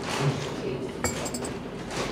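A ceramic cup clinks once against a saucer or table about a second in, a short sharp click with a high ring.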